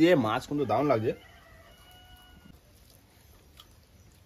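A rooster crowing once, faint, starting just after a second in and holding for over a second.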